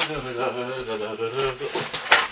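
A man's voice singing a wordless tune, with long wavering notes.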